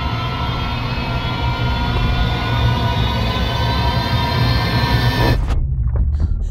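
Trailer score and sound design: a dense, swelling drone of many held tones over a deep rumble. Near the end everything but the low rumble cuts off abruptly.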